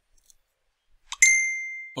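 Near silence, then a single high-pitched ding a little over a second in that rings on and fades away.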